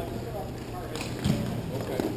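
Scattered knocks of hockey sticks and balls on the rink floor and boards, echoing in a large hall, over the murmur of players' voices.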